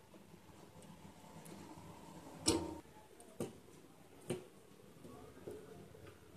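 Light clicks and taps from soldering work on a perforated circuit board, the iron and fingers knocking against the board and component leads: four short sharp ticks, the loudest about two and a half seconds in, then roughly one a second after it.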